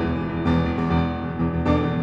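Steinway & Sons grand piano played, with notes held over a low bass and new chords struck about half a second in and again near the end.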